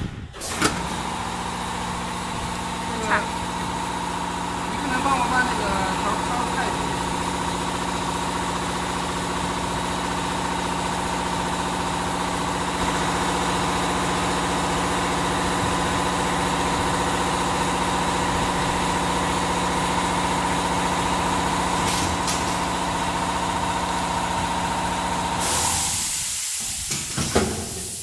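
Pneumatic sport-gel pouch filling and sealing machine running with a steady pitched hum, with a few light clicks in the first seconds. Near the end the hum cuts off suddenly and a short hiss of released air follows.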